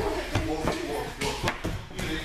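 Indistinct voices in a large gym hall, with a quick run of short knocks in the second half.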